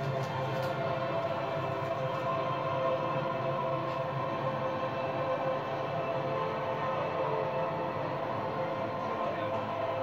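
Stadium crowd din with held music tones over it, steady and unbroken, heard through a TV broadcast that is recorded off the screen.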